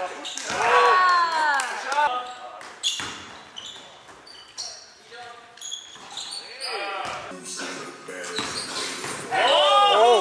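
Basketball sneakers squeaking on a hardwood gym floor in short bursts, and a basketball bouncing and hitting, during play. The squeaks cluster early on and again near the end.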